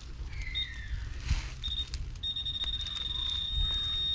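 High-pitched steady tone of a metal detector sounding over a target in the hole, a couple of short beeps at first, then held unbroken from about two seconds in. The target reads as a large piece of metal.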